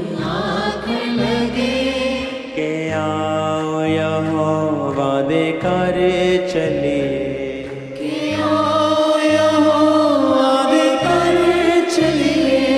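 Punjabi Christian worship song: a melody sung over a keyboard backing, with a bass line stepping through held notes. The music dips briefly about eight seconds in, then comes back fuller.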